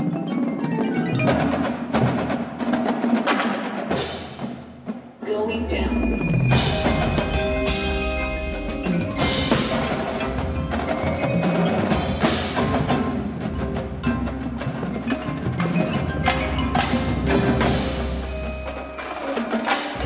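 Indoor percussion ensemble playing: front-ensemble marimbas and mallet keyboards ringing with marching drums striking, thinning briefly before a deep sustained bass comes in about five seconds in.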